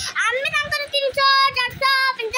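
A young girl singing unaccompanied, holding a run of steady notes.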